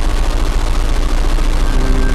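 Loud television static sound effect: a crackling hiss of white noise. Near the end, sustained musical tones begin under it.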